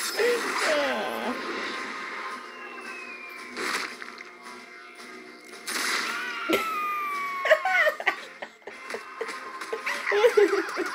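An animated show's soundtrack: music with dramatic sound effects, including sharp crash-like hits, one a little after three and a half seconds and a louder one about six seconds in.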